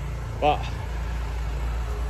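Hyundai 4200 petrol pressure washer engine running steadily with a low hum, now keeping going after an oil top-up cured its low-oil cut-out.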